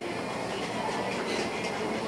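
Restaurant kitchen ambience: a steady rumble of equipment with a few light clinks about a second in.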